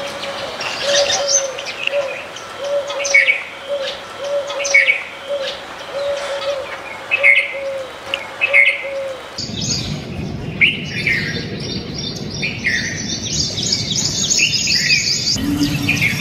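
Small birds chirping in short, repeated calls. Behind them runs a regular series of low, hollow notes, about one and a half a second. About nine seconds in, the background changes abruptly: the low notes stop, and busier, higher chirping goes on over a low rumble.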